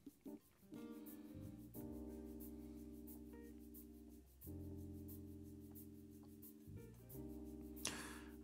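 Faint background music: sustained keyboard chords that change every second or few, with a short gap near the end.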